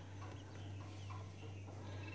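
Day-old Pharaoh quail chicks giving a few faint, short peeps over a steady low hum.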